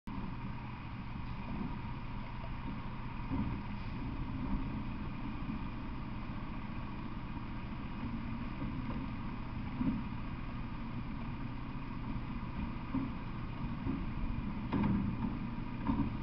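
Garbage truck engine running at idle, a steady low rumble, with a few faint knocks.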